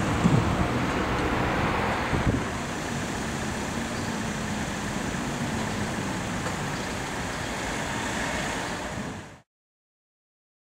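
Road traffic on a town street: a steady rush of car engines and tyres, a little louder in the first couple of seconds. It cuts off abruptly near the end.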